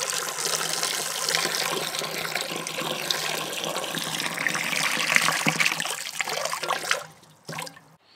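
A stream of water pouring and splashing into the shallow water at the bottom of a large earthenware jar as the jar fills; the pouring stops about seven seconds in.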